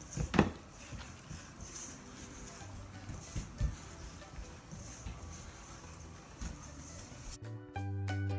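Hands mixing and kneading bread dough in a stainless steel bowl: quiet squishing with a few knocks against the bowl, the loudest shortly after the start. Background music starts abruptly near the end.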